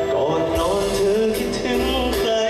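A male singer singing a luk thung song live into a microphone, backed by a live band.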